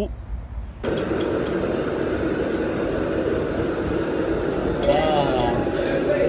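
Busy restaurant kitchen din that starts suddenly about a second in: steady chatter of many voices with scattered sharp clinks of glass and metal, and one voice standing out near the end.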